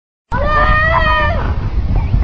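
One long, high-pitched shouted cry from a person, held for about a second and dropping at its end, over a steady low rumble.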